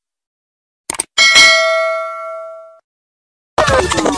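Subscribe-button animation sound effect: a short mouse-style click about a second in, then a bell ding that rings out and fades over about a second and a half. Music starts just before the end.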